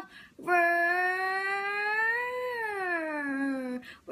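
A young girl's voice holding one long sung note without words: it rises slowly, then slides down in pitch and breaks off near the end.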